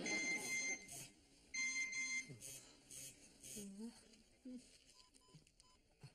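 Two electronic beeps, each steady and under a second long, about half a second apart. Near the end come four short, lower pips in quick succession.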